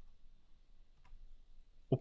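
A faint click of a stylus on a drawing tablet about a second in, with a few weaker ticks against quiet room tone. A man's voice starts right at the end.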